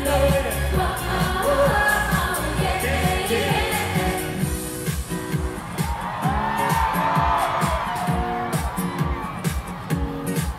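Live Korean pop song played loud through a concert PA, with a woman singing into a microphone over a bass-heavy electronic beat. About four seconds in, the heavy bass drops away, leaving a choppy, stop-start beat.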